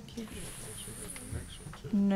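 A spoken word at the start, then a thin, steady high-pitched hiss lasting about a second and a half, with faint room murmur beneath.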